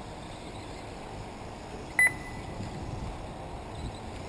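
A single short, high electronic beep about halfway through, from the race's lap-timing system, over steady low background noise.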